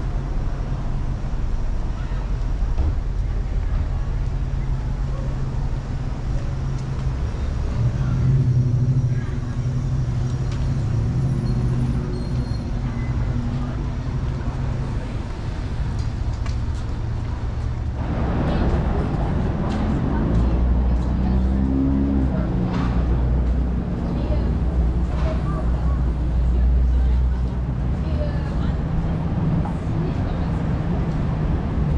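Busy city street traffic: car engines running and moving beside the sidewalk in a steady rumble, with passers-by talking. The traffic gets busier and louder a little past halfway.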